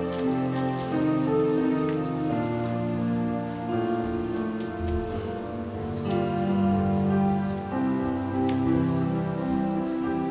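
Soft electronic keyboard playing slow sustained chords that change every couple of seconds, as quiet background music for the invitation.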